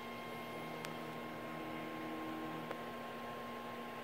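Steady electrical hum with a thin high whine over a faint hiss. Two faint ticks, about a second in and near three seconds.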